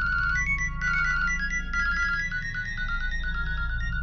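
A mobile phone ringtone: a high electronic melody of quick stepping notes that starts suddenly and keeps ringing, over low background music.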